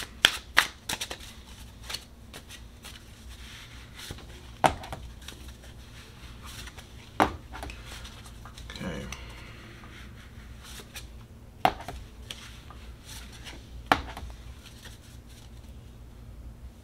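Tarot cards being shuffled by hand and dealt onto a wooden tabletop: a quick flurry of card clicks at the start, then single sharp card slaps a few seconds apart.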